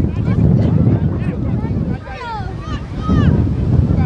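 Wind buffeting the microphone, with children's high-pitched shouts from the players, clearest two to three and a half seconds in.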